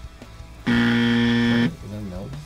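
Game-show style buzzer sounding once, a flat, steady buzz lasting about a second that starts and stops abruptly, marking a wrong guess.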